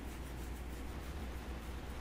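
Faint room tone: a steady low electrical-sounding hum under a soft even hiss, with no distinct events.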